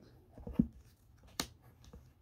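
Tarot cards being handled on a table: a few soft knocks, then a single sharp card click a second later.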